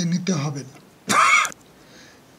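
A man's speech trails off in the first half-second, then a single short, loud throat-clearing cough about a second in.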